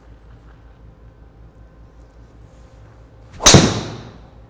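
A golf driver striking a teed ball about three and a half seconds in: one sharp, loud crack with a short fading tail. The ball was struck low on the face, toward the toe, as the golfer feels it.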